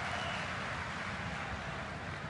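Faint, steady background noise with no distinct events: an even ambient hiss under the pause in the narration.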